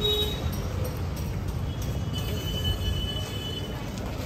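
Steady low rumble of city street traffic, with a faint high tone for about a second a little after halfway through.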